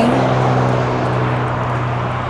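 An engine running at a steady speed, a low even hum under a broad rushing noise, easing off slightly toward the end.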